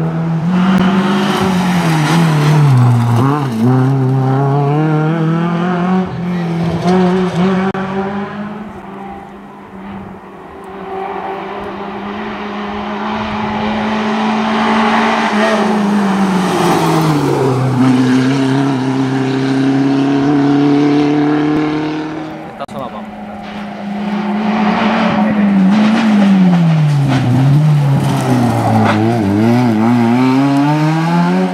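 Competition cars' engines held at high revs as they race uphill, the note climbing and then dropping sharply at gear changes several times, across cuts from one car to the next.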